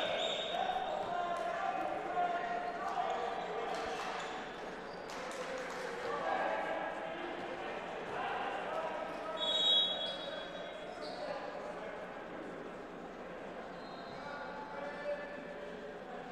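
Gymnasium ambience between volleyball rallies: a murmur of players and spectators talking in the large hall, with a volleyball bouncing on the hardwood floor and a brief high tone about ten seconds in.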